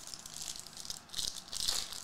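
Foil trading-card pack wrapper crinkling in the hands as it is opened: a rapid run of fine crackles that grows louder about halfway through.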